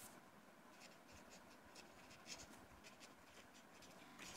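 Faint strokes of a felt-tip marker writing on paper, a series of short strokes one after another.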